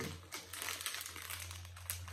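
Plastic wrapper of a Toxic Waste sour hard candy crinkling as fingers pick it open, in a run of irregular crackles.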